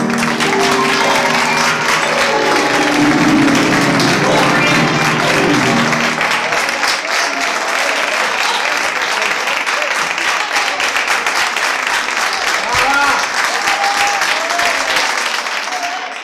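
Audience applauding at the end of a live tango song, the last notes of the music still sounding under the clapping for about the first six seconds. Near the end a few voices call out over the applause.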